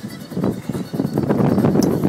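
Wind buffeting the microphone aboard a small deck boat rocking in choppy water, an irregular rumbling noise that swells about half a second in.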